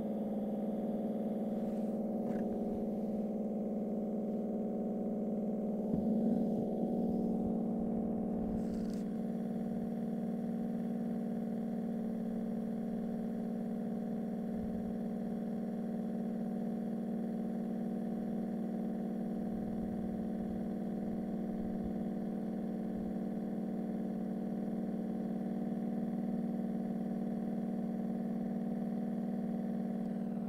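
Foam generator running steadily: a constant machine hum while compressed air and foam solution are pushed through the wand, filling a bucket with foam. The sound swells briefly about six seconds in and then settles.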